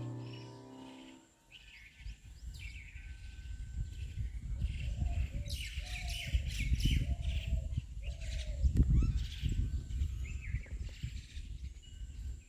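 Music fading out in the first second, then birds chirping and calling outdoors, with a series of short lower arched calls in the middle, over a low rumble.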